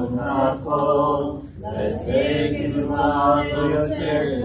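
Congregation chanting a prayer in Hebrew, the voices holding drawn-out sung notes.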